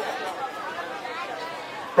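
Faint chatter of several voices talking at once, low and unbroken, with no single clear speaker.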